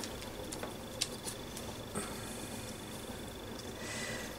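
Faint handling sounds of paper scraps being pressed down by hand, a few soft taps and rustles, over a faint steady high-pitched whine.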